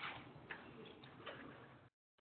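Near-quiet room with three faint, soft ticks spread over about a second and a half; the sound cuts out completely just before the end.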